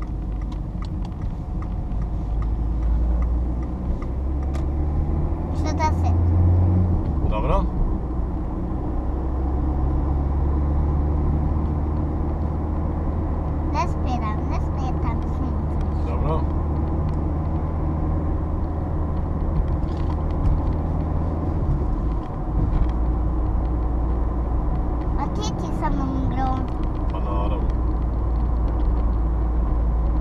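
Car engine and road noise heard from inside the cabin while driving: a steady low rumble, with a brief dip about two-thirds of the way through.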